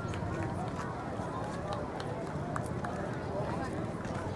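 A crowd talking, many voices overlapping at a steady level, with scattered sharp clicks.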